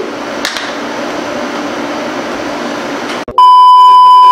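A loud, steady, high-pitched beep cuts in suddenly about three seconds in: a TV colour-bar test tone used as a transition effect. Before it there is a quieter steady hiss-like noise.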